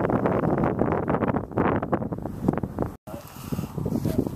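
Wind buffeting the camera microphone: a loud, uneven rushing rumble that breaks off abruptly about three seconds in, followed by a quieter wind hush.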